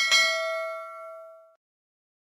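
Notification-bell sound effect: a single bright ding that rings on and fades away over about a second and a half.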